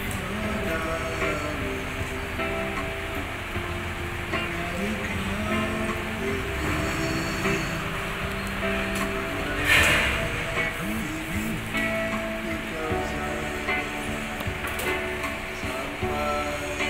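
An elderly man singing into a handheld microphone to his own electronic keyboard accompaniment, his voice wavering and gliding over sustained keyboard notes. A short burst of noise cuts across the music a little under ten seconds in.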